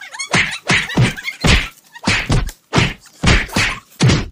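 A rapid run of about ten heavy thumps and whacks, two to three a second, like blows landing on a body.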